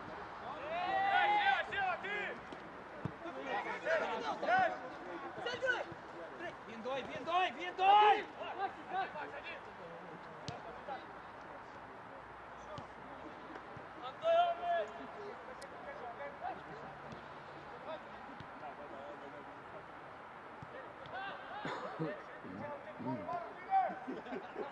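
Players and coaches shouting short calls across an open football pitch during play, in separate bursts with quieter gaps, and a few sharp knocks of the ball being kicked.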